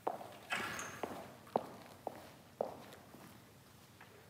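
A person's footsteps on a hard floor, about six steps roughly half a second apart, then stopping.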